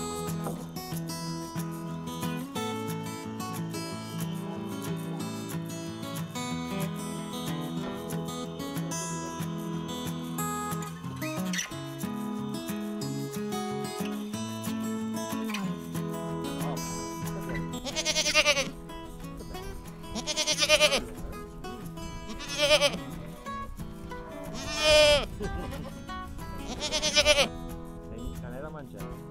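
Acoustic guitar background music that fades out about two-thirds of the way through, followed by a goat bleating five times, roughly every two seconds, loud and close to the microphone.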